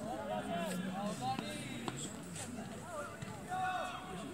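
Faint, distant voices of several people calling out around a football pitch during play.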